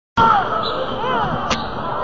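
Basketball game sounds in a gym: a continuous mix of crowd voices, with one sharp bounce of the ball about one and a half seconds in.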